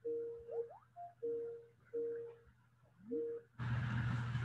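Mobile phone ringing: a ringtone of short, steady electronic notes with a couple of brief rising slides, repeated with short gaps between them.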